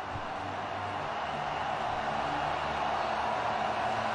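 Football stadium crowd cheering a home goal, a dense steady roar that slowly swells.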